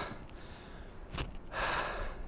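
A man breathing out audibly, a relaxed sigh-like exhale, near the end, after a single short click about a second in.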